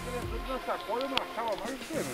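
Indistinct voices of people talking, with one sharp click a little past a second in.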